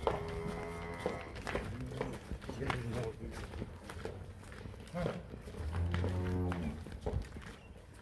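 Cattle mooing: a short moo at the start and a longer, lower moo about six seconds in, with hooves clicking on concrete as a cow is walked.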